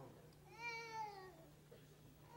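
A person's voice: one faint, drawn-out high-pitched vocal sound lasting about a second, its pitch arching up and then falling away.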